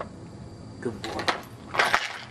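A dog eating from a bowl, with a few sharp metallic clinks as its metal collar tag knocks against the bowl, the loudest near the end.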